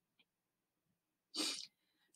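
Near silence, then a short, sharp intake of breath by a woman about one and a half seconds in, just before she speaks.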